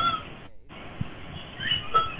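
A cat meowing twice, at the start and again near the end, heard thin and hissy through an online call's microphone.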